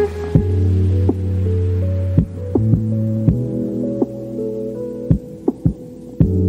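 Background music: a slow track with a deep, held bass tone and sparse plucked notes ringing out over it.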